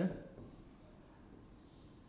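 Faint scratching of a marker pen writing on a whiteboard.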